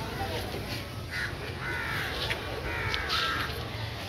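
A bird giving several harsh calls, from about a second in until shortly after three seconds, over a steady low hum.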